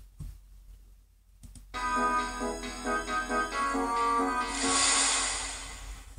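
MuseScore 2 playing back an imported MIDI file through its built-in synthesizer: after a short quiet start, sustained keyboard-like synth chords begin about two seconds in. A cymbal wash swells over them near the end.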